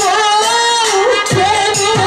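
Jatra folk-theatre song: a voice sings one long, wavering melodic line through the stage amplification over accompanying music. Two drum strokes that slide down in pitch come in the second half.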